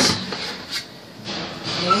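Baking tray being taken out of an oven: a sharp metal knock at the start as the tray comes off the rack, then a fainter knock about three-quarters of a second in.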